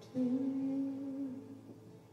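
A single steady hummed note from a lo-fi vocal track, held for about a second and then fading away.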